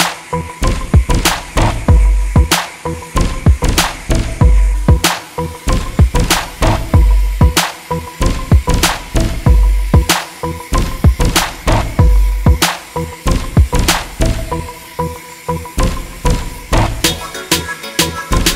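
Background music with a steady drum beat and deep bass hits about every second and a quarter.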